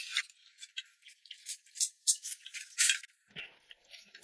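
Eating sounds from noodles in broth: an irregular run of short slurps and wet clicks, with no speech.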